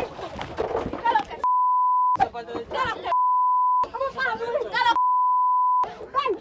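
Censor bleep: a steady 1 kHz tone that replaces the audio three times, each for under a second, blanking out words in excited, shouted speech.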